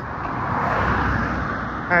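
A car passing on the road, its tyre and engine noise swelling about half a second in and holding.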